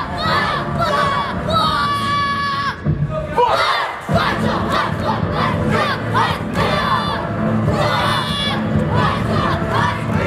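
A group of children shouting kiai battle cries together as they strike, repeated short yells and one long held shout about two seconds in.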